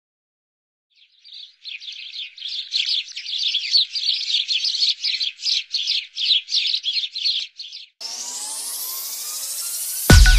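Birds chirping, many quick overlapping chirps, starting about a second in and cutting off suddenly near eight seconds. A rising electronic sweep follows, building toward the end.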